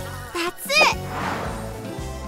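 Cartoon background music with a brief voice-like call about half a second in, its pitch sweeping up and down, followed by a short whoosh.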